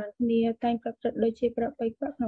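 A single voice reciting syllable after syllable at a nearly level pitch, in the manner of chanted recitation.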